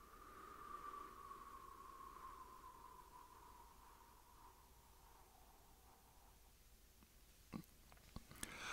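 A long, slow, faint exhale through pursed lips, a soft airy tone that sinks slightly in pitch and fades over about six seconds, as the last breath of a calming breathing exercise. A soft click comes near the end.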